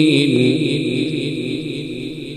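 A qari's voice in melodic Qur'an recitation, drawing out the final note of a verse over a microphone. The held note wavers, drops in pitch shortly after it starts, and then trails off.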